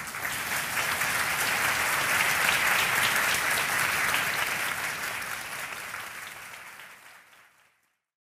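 Audience applauding, building over the first couple of seconds, then fading away steadily over the last few seconds into silence just before the end.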